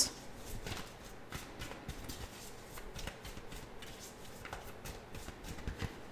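A tarot deck being shuffled by hand: quiet soft rustling and a string of faint card ticks, a little busier near the end as a card is drawn.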